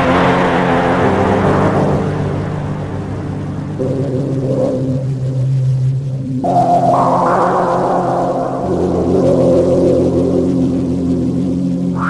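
Software emulation of a Korg PS-3200 polyphonic analog synthesizer playing slow, held chords with a pad sound over a low drone. A brighter chord comes in a little after halfway through.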